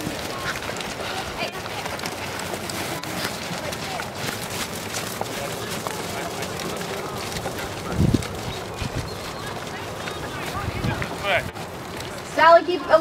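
Several ridden horses trotting on a sand arena: a dense, irregular patter of soft hoofbeats. A low thump comes about two-thirds of the way through, and a smaller one near the end.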